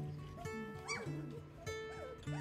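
Background music with held chords, over which young golden retriever puppies whimper and squeak a few times in short rising-and-falling cries.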